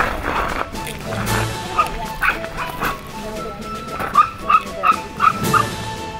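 Dogue de Bordeaux puppies yipping in short, high barks, a few scattered at first, then a quick run of about five near the end, over background music.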